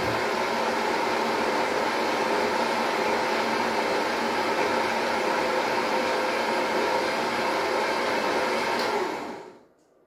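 Electric juicer motor running steadily while juicing celery, a constant whine over noise, then switched off near the end and winding down over about half a second.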